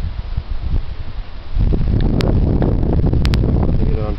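Wind buffeting the microphone in a low rumble, easing briefly and then gusting stronger about a second and a half in, with a few faint clicks.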